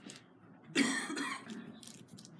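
A woman coughing into her fist: one harsh cough about three-quarters of a second in, lasting under a second.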